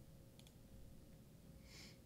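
Near silence with a faint computer mouse click about half a second in, and a short soft hiss near the end.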